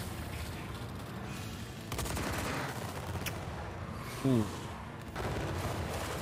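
Rapid gunfire from an animated battle scene's sound track: a dense, continuous crackle of shots, a little louder about two seconds in, with one sharp crack just after three seconds.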